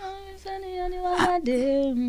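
A woman singing a short unaccompanied phrase: one long held note, then a lower held note near the end.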